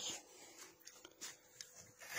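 Near silence: faint rubbing and a few soft clicks over a faint steady hum.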